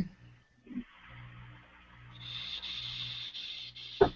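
Quiet room tone through a video call: a steady low hum and hiss that grows stronger about halfway through, with a short knock near the start and a sharper knock at the end.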